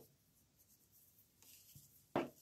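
Near silence, with faint rustling of paper being handled in the second half.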